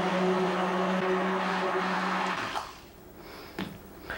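Hand-held stick blender running steadily in a pot of olive oil and sodium hydroxide solution, blending the thickening soap mixture; the motor stops about two and a half seconds in.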